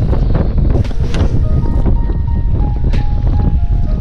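Strong gusting wind buffeting the microphone with a heavy low rumble, at a windswept shoreline. A few faint held tones step down in pitch through the middle, with some light clicks.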